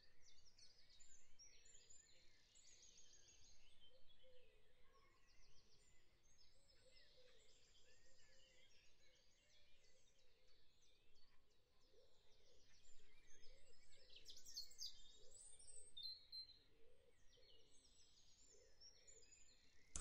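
Near silence with faint birds chirping, in quick repeated trills, a little busier after the middle.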